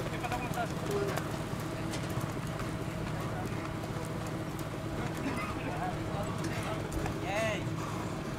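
Horses walking on a dirt racetrack, their hoofbeats soft and scattered, under faint voices of people around them, one voice calling out briefly near the end. A low steady hum runs underneath.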